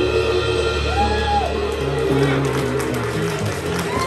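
The band's closing chord rings out on slide guitar and bass guitar at the end of a slow song, with a short sliding note about a second in. The audience starts cheering and clapping in the second half.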